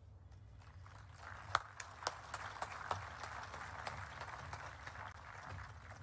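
Outdoor audience applauding: a spread of scattered claps that builds about a second in and thins out near the end.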